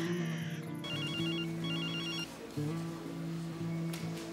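A mobile phone ringing: two short trilling rings a little after a second in, over a soft, sustained background music score.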